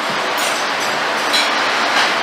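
Steady rushing noise with a few light clinks about half a second and a second and a half in.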